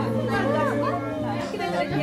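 Background music with steady low held notes, under several people chattering at once.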